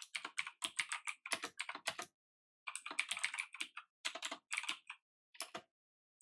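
Typing on a computer keyboard: quick runs of keystrokes, with short pauses about two seconds in and again near five seconds.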